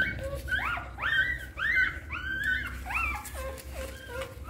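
Several newborn puppies crying with high, arching squeals that rise and fall in pitch, overlapping several a second, as the hungry litter jostles to suckle from their mother.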